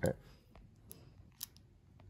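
Faint handling noise: about three light clicks and taps as a remote control in its plastic bag and a small camera are handled on a work surface.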